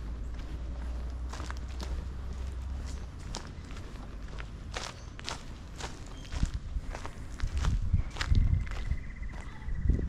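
Footsteps of a person walking at an even pace on a concrete footpath, a short sharp click with each step, over a low rumble that fades after about three seconds.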